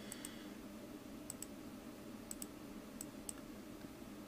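Computer mouse clicking several times, mostly in quick pairs like double-clicks, faint over a steady low hum.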